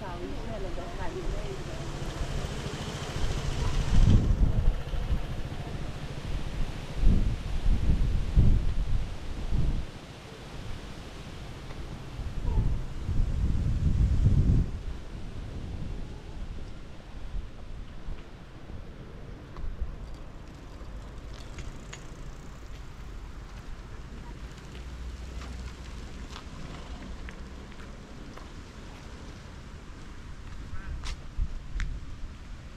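A motor scooter passes close by in the first few seconds, its engine and tyre noise cutting off about four seconds in. Then gusts of wind buffet the microphone in two long bouts of low rumbling, the loudest sound here.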